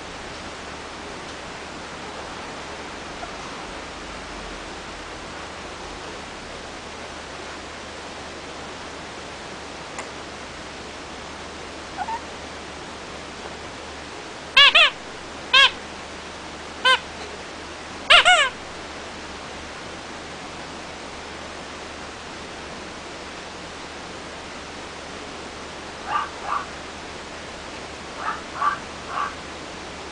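Rubber duck squeaky toy squeezed: about four loud, short squeaks around the middle, then several fainter squeaks near the end, over a steady hiss.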